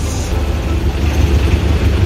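Street traffic: a steady low rumble of vehicle engines passing on the road.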